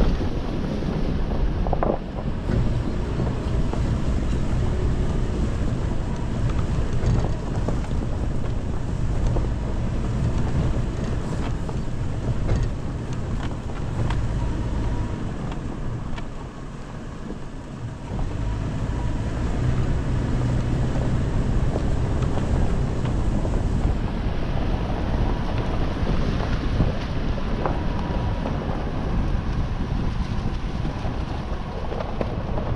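A 2020 Toyota 4Runner TRD Off Road driving along a dirt trail: a steady low rumble of its 4.0-litre V6 and tyres on dirt, with wind buffeting the microphone. The rumble eases for a couple of seconds a little after halfway.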